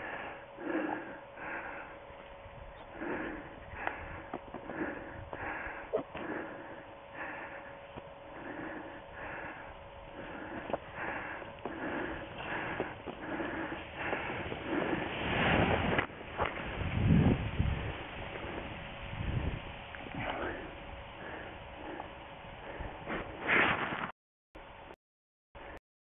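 A person breathing hard close to the microphone, in quick short breaths or sniffs, one or two a second. A louder rush of noise comes about two-thirds of the way through.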